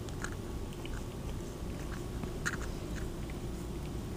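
A cat right up against the phone's microphone making small clicking mouth noises, scattered and faint over a low steady hum.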